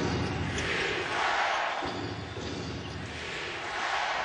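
Arena crowd noise at a basketball game: many voices at once in a steady din that swells and eases every second or so.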